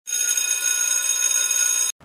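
Electric school bell ringing with a steady, unbroken ring, cutting off suddenly near the end.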